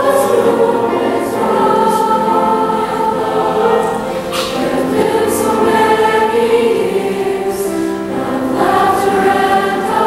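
A large mixed choir singing in full harmony, holding long sustained chords that shift every second or so.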